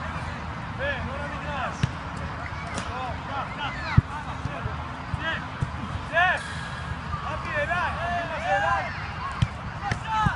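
Soccer balls being kicked and caught, with a few sharp thumps, the loudest about four seconds in, over many distant shouting voices of players across the pitch.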